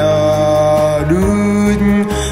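A hymn sung in Jarai over a sustained low accompaniment, the voice holding long notes; a higher held note gives way to a lower one a little past halfway.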